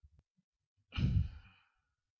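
A man's breathy sigh about a second in, fading out within about half a second.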